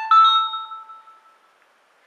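iPhone notification alert chime: two quick bell-like notes, one right after the other, ringing out and fading over about a second and a half.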